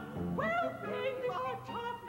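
A woman singing in an operatic style with a wide vibrato, including a rising sung note about half a second in, over musical accompaniment.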